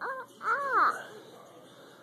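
A toddler's high-pitched monkey imitation: a short call, then a longer one that rises and falls in pitch.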